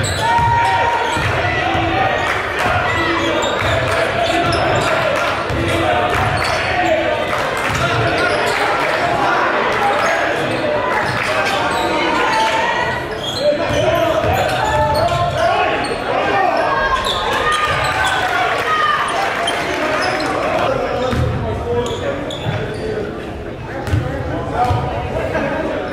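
Live basketball game in an echoing gymnasium: the ball bouncing on the hardwood court in repeated thuds, under a steady mix of shouting players and spectators.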